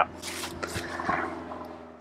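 Soft rustling and handling noise with a few faint ticks, fading away over about a second and a half, over a faint steady low hum.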